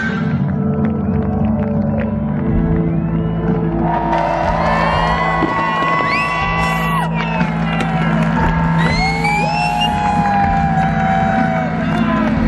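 Live rock band playing at a large concert, with long sliding notes held over a steady low drone. Crowd cheering and whoops are mixed in.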